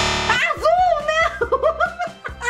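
A loud guitar chord struck once and fading within about half a second, followed by a high, wavering voice-like sound.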